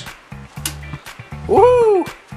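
Background music with a steady low bass beat. Near the end, a short pitched vocal sound rises and then falls.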